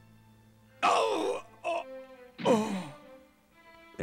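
A man's groans and cries of pain over soft background music. There are two loud outbursts, about one second and two and a half seconds in, and the second falls in pitch.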